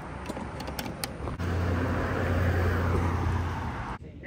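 A Huffy Lightning McQueen ride-on toy car plays its electronic engine-revving sound effect through its small speaker. A few light clicks from the toy come first, then the engine sound starts about a second and a half in, runs steadily for about two seconds and stops short near the end.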